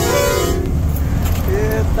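Steady low rumble of a truck on the move under background keyboard music with a repeating melody. The music breaks off about half a second in, leaving the rumble alone, and a man's voice starts near the end.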